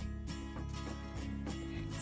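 Quiet background music with sustained notes.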